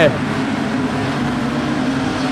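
Engines of a pack of production sedan race cars running together during a speedway race, heard as a steady drone with a low hum.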